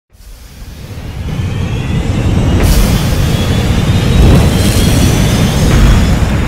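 Logo-intro sound effect: a deep rumble swells up out of silence with whines slowly rising in pitch over it, surging suddenly about halfway in and again near the end into an explosion-like boom.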